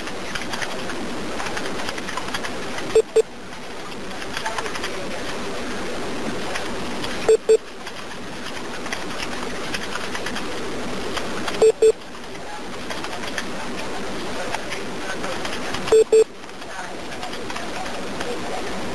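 Hiss of a telephone line with a short double beep repeating about every four seconds, four times. It is the periodic tone of a 911 call on hold while the dispatcher talks to the responding officers.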